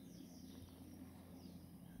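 Near silence: faint outdoor background with a few faint, distant bird chirps.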